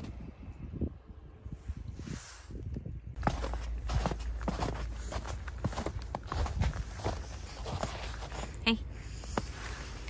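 Footsteps and rustling close to the microphone, made up of irregular short scuffs and knocks, with a steady low rumble that starts about three seconds in.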